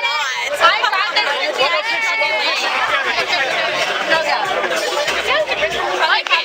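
Several people talking over one another at close range, a steady run of overlapping chatter and exclamations.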